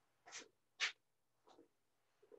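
Faint, short scratches on a whiteboard: three quick strokes, the second and loudest about a second in.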